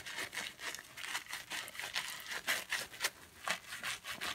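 Wet mesh foaming net being squeezed and kneaded by hand to work cleansing powder into a lather: a rapid, irregular string of small wet squishes and crackles.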